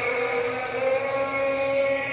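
A loud, steady, trumpet-like drone from the sky: one held pitch with several overtones and no breaks. It is one of the viral unexplained 'strange sky sound' recordings, which some take for the heavenly trumpet and others call a hoax.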